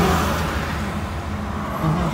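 Road noise inside a moving car's cabin: a steady low engine and tyre rumble with a hiss of wind and tyres over it.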